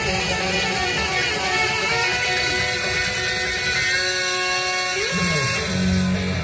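Music with held, sustained notes. Deeper notes come in about five seconds in.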